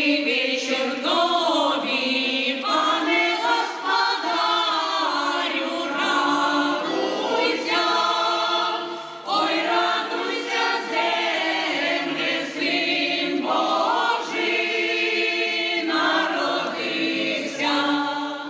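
A women's folk choir singing a traditional Christmastide carol (kolyadka) in several phrases, with a short break about nine seconds in.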